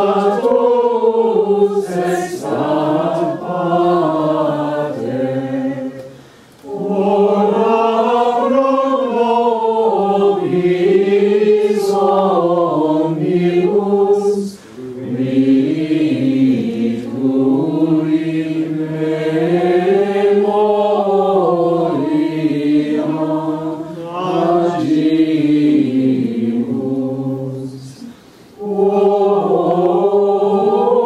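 Voices singing medieval Sarum plainchant in unison: a Latin chant in long, flowing phrases, with short breaks for breath about a quarter of the way in, about halfway and near the end.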